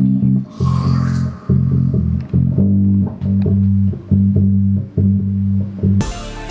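Electric bass and electric guitar playing a heavy rock riff together in a small room, the low notes struck in short repeated blocks with brief gaps.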